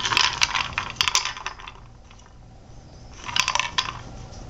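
A few pieces of dry food rattling and clicking inside a plastic cube food-puzzle toy as a cat paws and flips it. There is a burst of rattling over the first second and a half, a quieter pause, then another short burst near the end.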